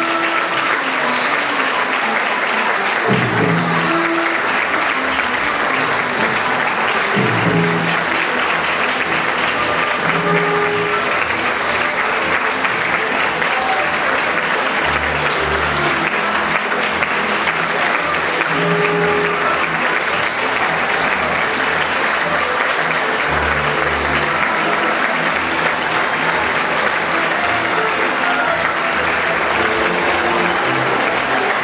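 Audience applauding steadily while the theatre orchestra plays music under the clapping.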